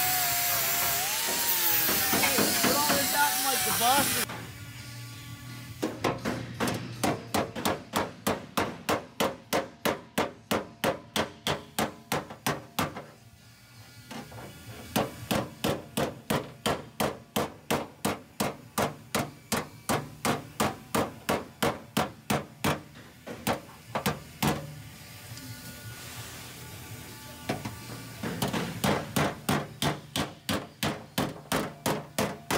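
Hammer and dolly working the steel wheel-arch lip of a 1967 Mustang fender, about three sharp blows a second in runs with short pauses, rolling the lip so the tyre clears it. A loud steady hiss fills the first four seconds and cuts off before the hammering starts.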